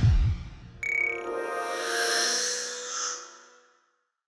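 Short musical logo sting: a couple of low thuds, then about a second in a bright chime opens a held chord that fades out just before the end.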